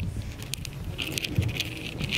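Light metallic rattling and clicking of something being handled, getting busier about a second in.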